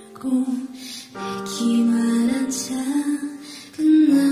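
Female voice singing a slow Korean ballad over soft instrumental accompaniment, with a short breath between phrases about a second in.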